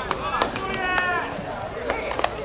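Sharp cracks of a fungo bat hitting baseballs and balls smacking into leather gloves in infield fielding practice: two knocks near the start and another near the end, with players' drawn-out shouted calls in between.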